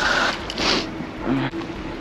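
Riding noise from a Varla Eagle One Pro electric scooter moving down the street: a steady rush of wind and road noise, with a brief louder hiss about half a second in.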